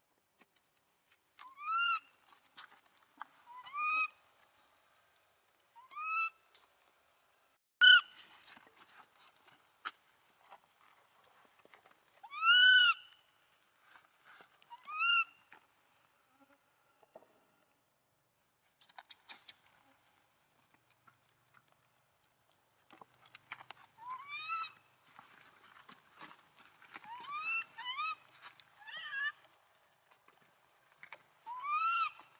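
Infant long-tailed macaque crying: short, high-pitched calls that rise and fall, one every couple of seconds at first, then a quicker run of them near the end.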